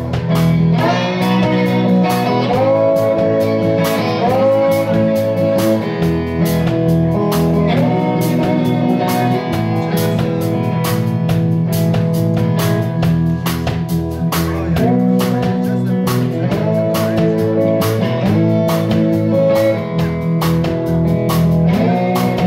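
Live blues band playing an instrumental passage: electric guitars with bent notes over electric bass and a drum kit keeping a steady beat.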